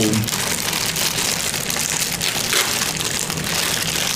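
Individually wrapped cookies being opened by hand: several wrappers crinkling and tearing at once, a dense, crackly rustle.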